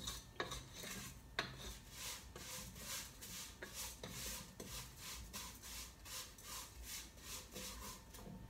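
Wooden spoon stirring dry fideo noodles as they toast in a pot, soft rhythmic scraping strokes, a few a second, with a couple of sharp knocks of the spoon in the first second or so.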